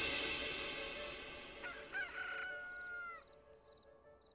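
A rooster crowing once, a single cock-a-doodle-doo ending in a long held note that drops off at the end, heard faintly as background music fades away.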